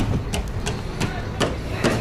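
Footsteps on concrete, a short sharp tap about every third of a second, over a low steady rumble of wind on the microphone.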